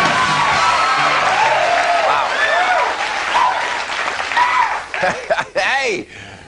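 Studio audience applauding and cheering, with many whoops over the clapping; it dies away in the last second.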